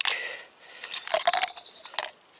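A small songbird singing a high, quickly repeated trill, with a few short clicks near the middle from the plastic parts of an AeroPress being handled.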